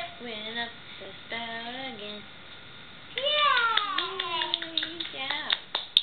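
A toddler singing in a high voice: short sung notes at first, then a long note that slides down in pitch. A few sharp hand claps follow near the end.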